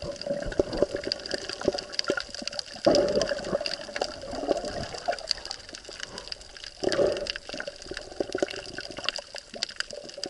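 Underwater sound taken in by an action camera's housing: water swirling and sloshing over a steady fine crackle of clicks, with louder surges about three and seven seconds in.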